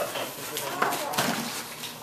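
Indistinct background voices, with a few light clicks and rustles of handling.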